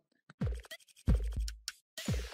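Logo intro sound effects: after a brief silence, two deep booming hits that drop quickly in pitch, about half a second and a second in, with sharp scratchy clicks around them.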